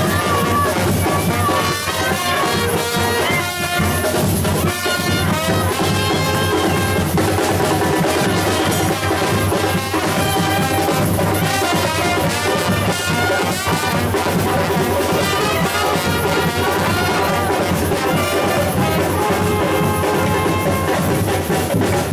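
A street band of saxophones and other brass with drums playing loud, continuous dance music.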